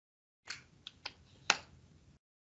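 Half a second of silence, then four short clicks at a computer, the loudest about a second and a half in.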